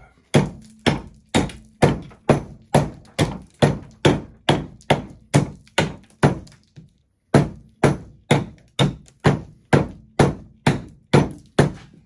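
A small hand axe chopping down along a thin wooden branch held upright on a stump chopping block, about two strikes a second with a short break just after the middle. The regular blows pare the end of the branch into a cone.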